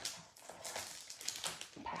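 Crinkling and rustling of a clear plastic packet of pre-cut cardstock pieces being picked up and handled.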